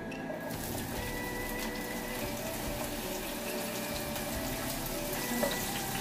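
Cherry tomatoes sizzling and crackling in hot olive oil in a frying pan. The sizzle starts about half a second in, as they hit the oil, and holds steady while they are stirred.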